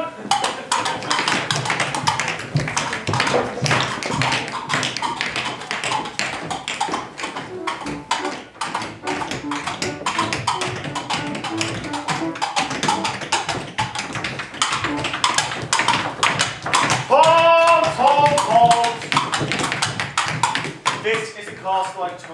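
Audience applauding with many sharp hand claps, and a voice calling out briefly near the end.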